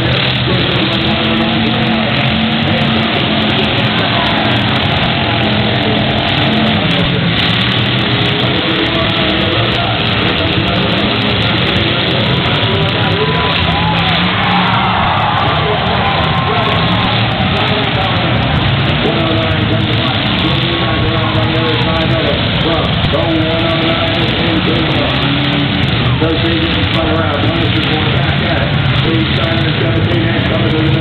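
V8 demolition derby cars' engines running in the arena, mixed with unclear announcer speech and music over the public-address loudspeakers.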